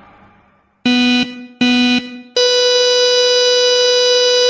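Two short electronic beeps on one low pitch, then a long, steady beep about an octave higher, held.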